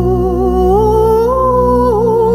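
Greek Orthodox Easter hymn: a woman's voice holds a long ornamented melisma on a vowel without words, over a steady low drone. The melody steps upward twice, then dips near the end.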